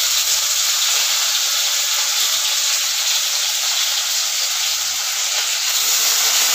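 Steady sizzling of food frying in hot oil in a kadhai on a gas stove.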